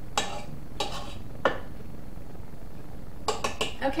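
A spatula scraping and knocking against a stand mixer's metal bowl as dough is scraped down the sides: three sharp knocks in the first second and a half, then a quick run of taps near the end.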